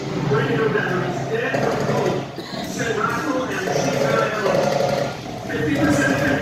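Indistinct voices talking, loud throughout, with no words that can be made out and a brief dip about five and a half seconds in.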